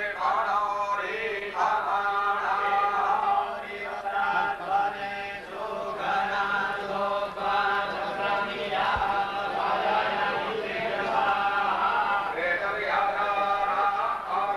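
Mantras chanted by voices in unison during a Vedic yagna, in steady phrases of held notes with short pauses between them.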